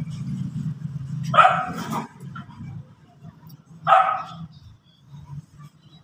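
A dog barking twice, the barks about two and a half seconds apart.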